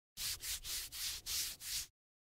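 A scraping, rubbing sound effect: a quick series of hissy strokes, about three a second, that stops abruptly.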